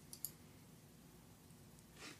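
Near silence: room tone with a few short, faint clicks just after the start.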